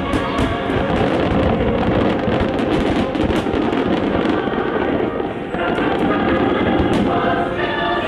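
A rapid, continuous barrage of fireworks shells bursting and crackling, mixed with the show's music soundtrack. Sustained musical notes come through more clearly near the end.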